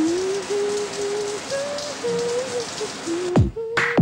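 Shower water spraying in a steady hiss, with a single melody of long held notes over it. Near the end a beat-driven song starts.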